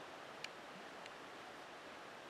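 Quiet outdoor background: a faint, steady hiss with one small click about half a second in.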